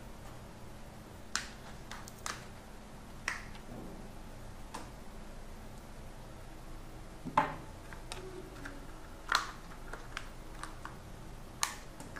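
Scattered sharp plastic clicks and taps, about seven in all at irregular intervals, as the snap-on back cover of a Motorola Moto E6 Plus is opened and its battery taken out.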